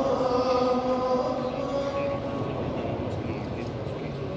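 A man's chanting voice holding long, drawn-out notes, fading over the second half, over the low murmur of a large crowd.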